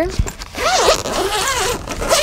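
The zipper on a hardside suitcase's fabric lid divider is pulled open in one continuous run that starts about half a second in. Its pitch wavers as the pull speeds up and slows.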